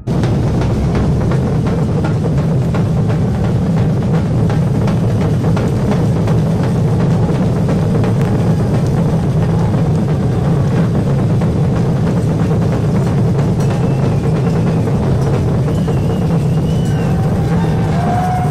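A samba drum band (bateria) playing a loud, dense, steady groove on surdo bass drums and other drums, many drummers together.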